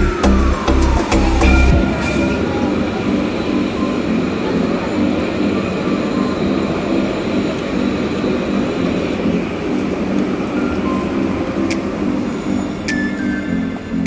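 Background music with repeating chords. A heavy bass part drops out about two seconds in, as a falling sweep winds down.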